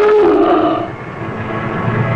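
A submarine's diving alarm klaxon sounds one swooping "ah-ooga" blast, the signal to dive, ending about a second in. A low rumble follows.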